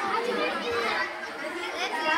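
Many children talking at once: a busy hubbub of overlapping voices with no single speaker standing out.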